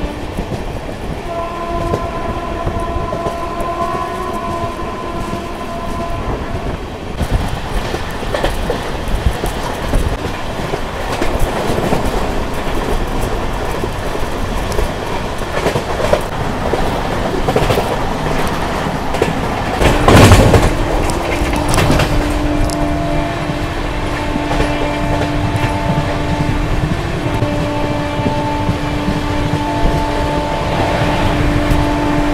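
Express passenger train running at speed, heard from beside its coach: steady rail and wind noise with repeated wheel knocks, and a loud clattering burst about two-thirds of the way through. Steady held tones sound over the running noise near the start and through the last third.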